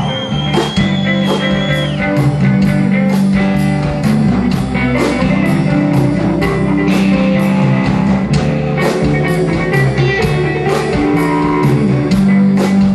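Live rock band instrumental break: a lead electric guitar, a sunburst Les Paul-style single-cut, plays a solo over bass and a steady drum beat. The solo opens with one high note held for about two seconds.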